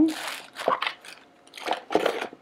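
Plastic wrapping crinkling and a cardboard box and its insert being handled, a longer crinkle at first and then several short rustles and taps.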